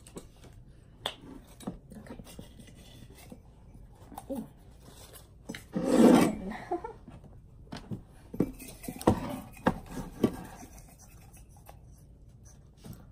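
Hands rummaging and rubbing through folded paper number slips in a ceramic mug, with scattered small clicks and clinks of a spoon and tin cans being handled. A louder burst of handling noise comes about six seconds in.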